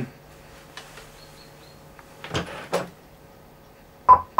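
Faint steady hum from the powered-up stereogram amplifier, with a small click near the start and two short knocks a little over two seconds in, about half a second apart, as its front-panel controls are handled.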